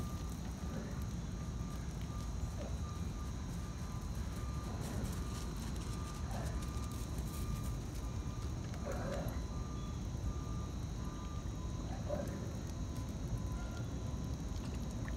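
Steady low rumble with a faint series of short beeps at one pitch, like a vehicle's reversing alarm, repeating through most of the stretch. A few brief animal calls come at intervals of a few seconds.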